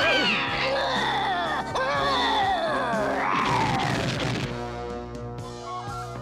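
Cartoon background music with comic sound effects: a shrill cry near the start, then a long falling glide with a noisy rush about three to four seconds in.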